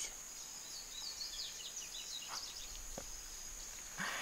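A steady, high-pitched insect trill in the background, with a few quick bird chirps from about half a second to two and a half seconds in.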